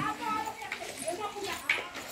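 Faint voices in the background during a pause in close speech, with one short click near the end.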